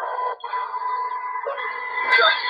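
Steady hiss from an amplified recording, with faint steady hum tones underneath and a brief drop-out about half a second in.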